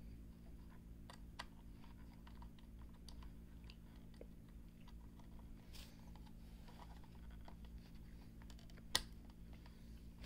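Faint scattered clicks and light taps of hands working on a speaker plate amplifier while the subwoofer driver is hooked back up to it, with one sharper click about nine seconds in.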